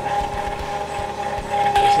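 Ice cream maker's motor running with a steady whine as its paddle churns thickened ice cream, with a few soft irregular knocks. The whine is the cue that the batch is thick enough for mix-ins.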